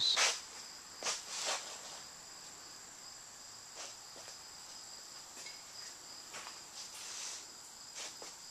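Faint, scattered brief rustles and light knocks over a steady high-pitched whine.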